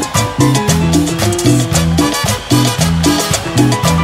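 Live Latin dance band playing an instrumental passage of a cumbia without vocals. A bass line repeats in short notes under steady, regular percussion that includes a cowbell.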